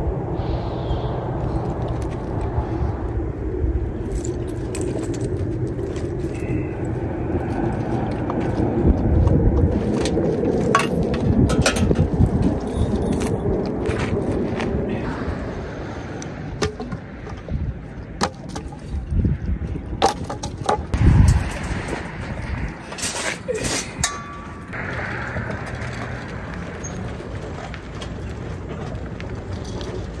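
Steady outdoor rumble for about the first half, then a run of scattered clinks and knocks, with a few louder thumps around twenty seconds in, as things are handled by hand.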